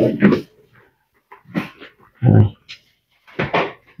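A man's voice in short, broken phrases with silent pauses between them.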